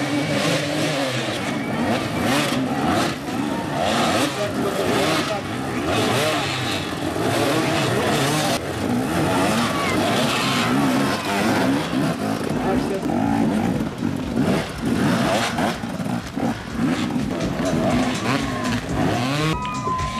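Several enduro dirt bikes revving hard, their engines rising and falling in pitch over and over as they climb obstacles.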